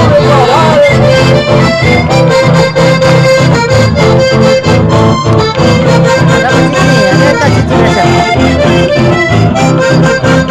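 Live band music played loud through a PA: an accordion carries the melody over strummed guitars, bass and a steady beat.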